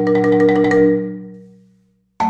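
Concert marimba played with four yarn mallets: fast repeated strokes sustain a chord that swells and then fades away near the end.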